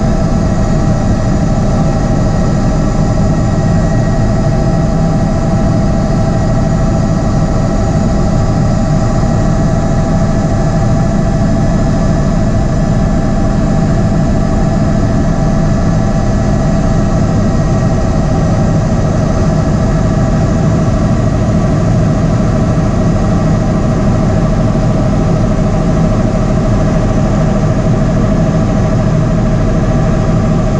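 Bell 206 JetRanger III helicopter in flight, heard from inside the cockpit: a steady turbine whine from its Allison 250 turboshaft engine over a fast, low beat from the two-blade main rotor.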